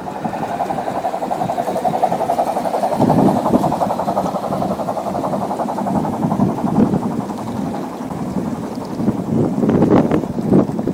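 Gauge 1 garden-railway train running past close by, its wheels rattling steadily on the track, the rumble growing louder about three seconds in as it nears.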